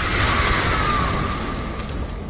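A cartoon character's long yell, heard with a rushing noise and falling slightly in pitch partway through.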